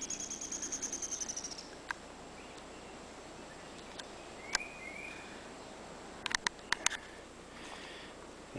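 Songbirds calling: a fast, high trill in the first couple of seconds, then a few short slurred chirps around the middle. Several sharp clicks come in a quick cluster a little before the end.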